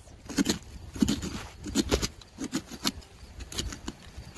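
Plastic pumpkin-carving scoop scraping inside a pumpkin, loosening the stringy pulp and seeds: a run of irregular scratchy scrapes and small clicks.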